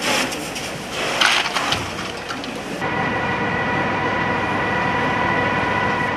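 Sound of a fire scene where market kiosks are burning: a loud rushing noise with two louder surges in the first two seconds, then, about three seconds in, a steady high mechanical whine with several tones comes in and holds.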